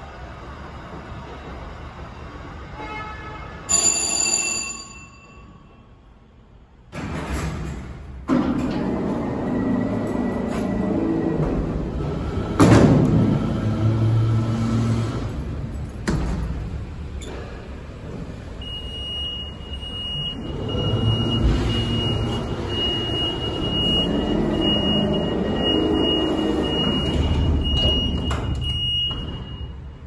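Schindler hydraulic freight elevator arriving at a landing: a ringing chime with several tones about four seconds in, then the running sound dies away. A thump about seven seconds in starts a long stretch of loud rumbling and clatter from the Peelle freight doors and gate, with a steady high tone over the last ten seconds or so.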